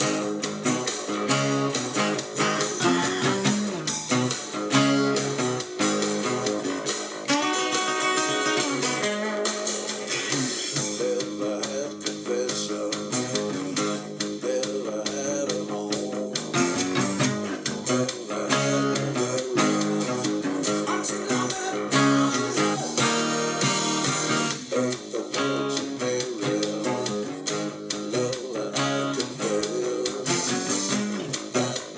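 Live acoustic rock band recording with steel-string acoustic guitars playing a bluesy riff, and a cutaway acoustic-electric guitar played along with it.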